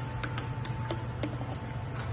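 Quiet background hum with a few faint, scattered ticks and clicks.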